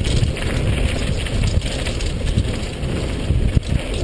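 Wind rushing over an action camera's microphone on a mountain bike descending a dusty dirt trail at speed, mixed with the irregular rattles and knocks of the bike over the rough ground.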